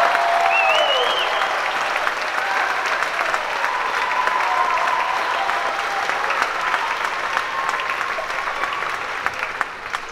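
Audience applauding, with a few voices calling out; the applause slowly fades toward the end.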